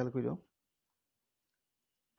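A man's lecturing voice for about the first half second, then dead silence with no room tone.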